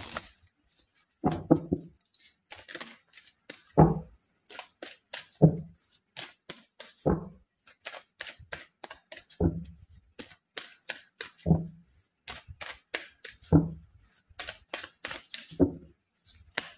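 A tarot deck being shuffled by hand: a rapid patter of card clicks, with a duller, louder thump about every two seconds.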